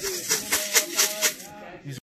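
Pigeon wings flapping in a rapid rattling flurry, about ten beats a second, dying away about one and a half seconds in.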